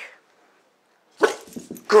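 A boxer barking on the "speak" command, the first loud bark coming a little over a second in.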